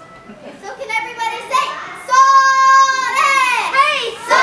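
Girls' voices trading taiko-style shouted calls (kakegoe): short spoken syllables, then a loud long held call about halfway through, and near the end a call that slides down in pitch.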